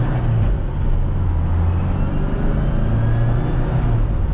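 Classic Mini's engine and road noise heard from inside the small cabin while driving: a steady low drone, with a faint whine rising in pitch about halfway through.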